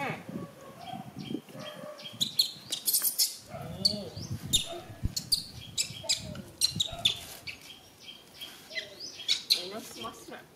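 A puppy sucking and smacking at a small milk bottle, making many quick wet clicks, mixed with short high squeaks and whimpers from a young animal.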